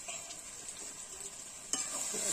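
Quiet sizzling of a curry frying in a metal kadai. Near the end a metal spatula strikes the pan and begins scraping as the curry is stirred, and the sizzle grows louder.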